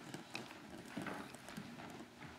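Faint, irregular knocks and clicks in a quiet room.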